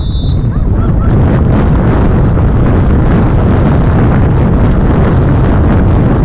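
Wind buffeting the microphone in a loud, steady rumble, with a short referee's whistle blast right at the start.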